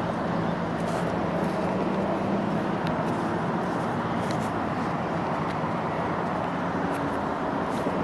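Steady background noise, a low hum under a hiss, with a few faint ticks.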